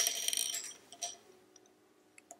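Wooden double-pointed knitting needles clattering against each other and the marble tabletop as they are handled: a brief light rattle at the start, then a couple of faint clicks about a second in.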